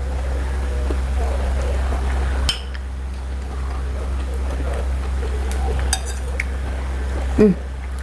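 Metal cutlery clinking a few times against a ceramic plate during a meal, over a steady low hum that drops in level a couple of seconds in. A short murmured "hmm" comes near the end.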